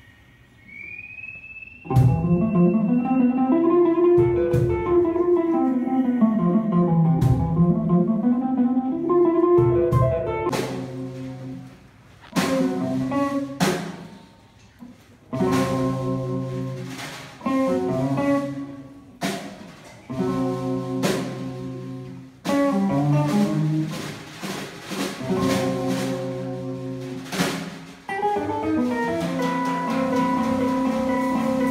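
Archtop hollow-body guitar and a small drum kit playing live instrumental music. After a quiet first two seconds, long notes swoop up and down in pitch. From about ten seconds in, the guitar plays stop-start chord phrases punctuated by sharp drum hits.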